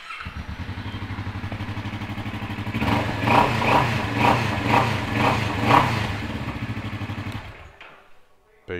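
A Kawasaki Vulcan S 650's parallel-twin engine, breathing through an aftermarket Arrow Rebel exhaust, fires up and idles with a deep, even pulse. About three seconds in it is blipped about six times in quick succession, then settles back to idle before stopping near the end.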